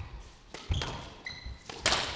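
Squash ball being struck by rackets and hitting the court walls during a rally, with a brief squeak of shoes on the court floor, three sharp hits in all, the last and loudest just before the end. That last shot is the one that goes down, an error that ends the rally.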